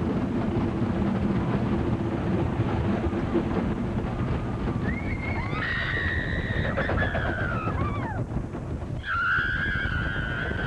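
Roller coaster train rumbling along its track at speed, with wind buffeting the microphone. From about five seconds in, riders scream in long high-pitched screams, and again near the end.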